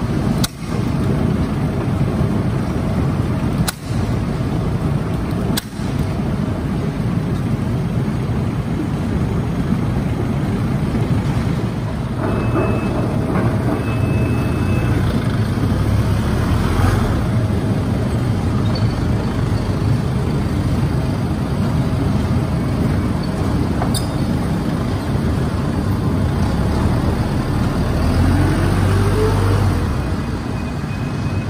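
Steady machinery noise from the potato-handling equipment in the shed, then a forklift's engine running while it drives. Near the end the engine revs and a rising whine comes in as the forks lift a full crate of potatoes.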